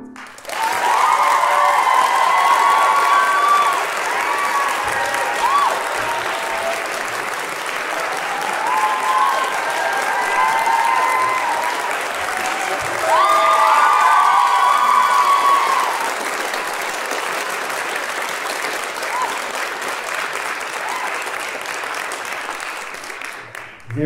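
Concert audience applauding, with voices calling out over the clapping. It starts just after the music ends and fades near the end.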